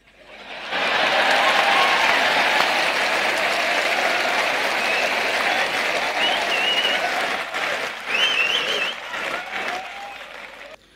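Audience applause, swelling over the first second, holding steady, then dying down near the end, with a few voices heard over it.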